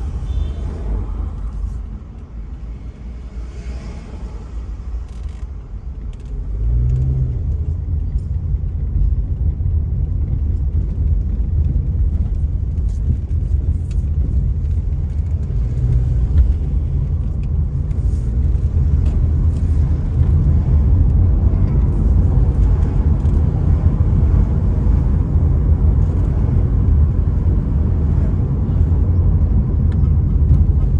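Low rumble of a car's engine and tyre noise while driving on a paved road. The rumble is quieter for a few seconds, then grows louder about six seconds in and stays steady.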